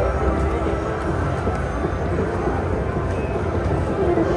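Thunder Drums Mayan Mask slot machine playing its bonus-round music, with steady electronic tones over a low hum of casino background noise.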